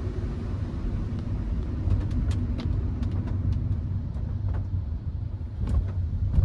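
Cabin noise of a Hyundai HB20 1.6 automatic driving on a wet road: a steady low rumble of engine and tyres, the engine turning at low revs around a thousand rpm, with scattered light ticks.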